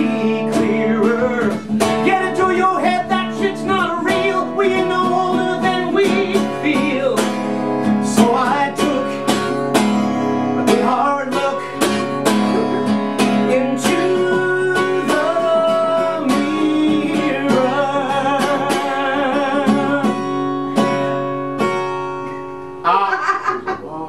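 Cutaway acoustic guitar strummed and picked through an instrumental passage of a folk-country song, with a man singing in places; the playing dies down about a second before the end.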